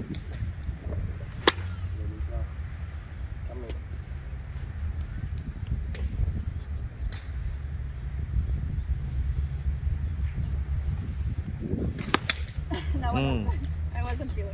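Sharp clicks of a golf club striking a ball: a loud one about a second and a half in and another near the end, with a few fainter clicks between, over a steady low rumble.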